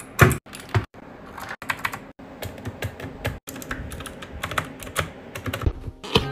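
Keystrokes on a compact mechanical keyboard: a run of irregular clacking key presses, several a second, coming thicker in the middle.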